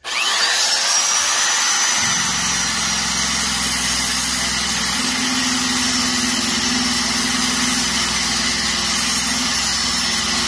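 Dynafile belt sander starting with a quick rising whine, then running steadily. About two seconds in, its abrasive belt bears on the knurled steel wheels of a ring roller and a lower grinding rumble joins it as the knurling is sanded down.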